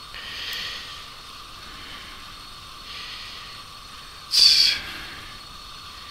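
Steady microphone hiss with soft breaths from a close microphone, and one short, sharp breath a little after four seconds in.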